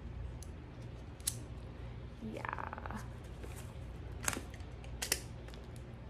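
Sharp plastic clicks and taps as a part is fitted onto an Rx7 Superlite hair dryer: a few single clicks, with two close together about five seconds in.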